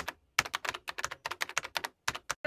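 Computer keyboard typing sound effect: a fast run of key clicks, about eight a second, with a short pause just after the start.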